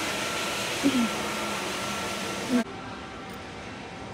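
Steady rushing background noise of a large store, like air handling, with a couple of brief voice fragments. It cuts off abruptly about two and a half seconds in to a quieter, duller room tone.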